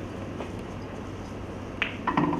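A single sharp click of a snooker ball being struck near the end, with a fainter click earlier, over a steady low hum.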